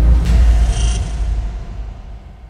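Logo sting music: a deep bass swell with a brief bright high tone just under a second in, then fading out.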